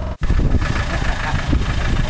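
Off-road 4x4's engine running at a steady idle, with a brief break in the sound just after the start.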